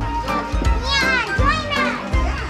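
Children's high-pitched shouts and squeals of play, loudest about halfway through, over music with a steady bass beat.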